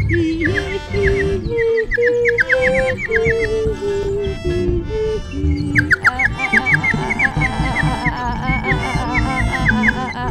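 Free improvised music from several musicians playing together. A line of held notes steps up and down in the middle register, and quick runs of high, falling, bird-like chirps at about five a second pause in the middle and come back about six seconds in, all over a busy low texture.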